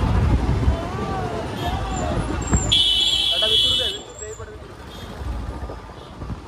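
Voices over street noise, then about three seconds in a loud, shrill blast lasting about a second, like a horn or whistle.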